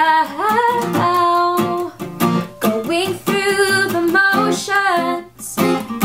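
Female voice singing over her own strummed acoustic guitar, the strums steady under the changing sung notes, with a brief dip just before the end.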